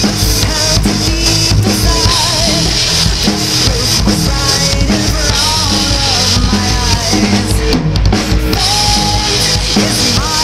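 Acoustic drum kit played fast and steadily, with kick, snare and cymbal hits, along to a recorded symphonic metal song whose wavering sung melody runs over the top.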